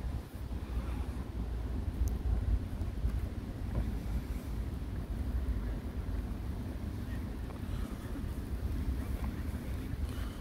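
Wind buffeting the phone's microphone: an uneven low rumble that swells and dips throughout.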